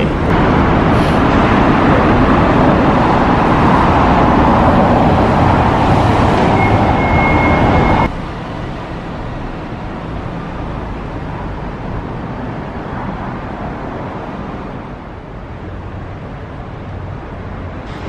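Steady noise of road traffic and wind, loud for the first eight seconds, then dropping suddenly to a quieter, even hiss. A brief thin high tone sounds just before the drop.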